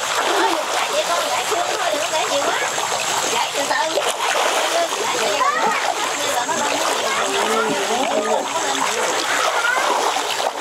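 A dense school of fish, mostly barbs, splashing and churning steadily at the surface of muddy water as they take feed thrown to them.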